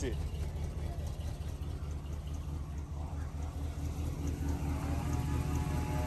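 Box-body Chevrolet's engine idling: a steady low rumble with a fast, even pulse.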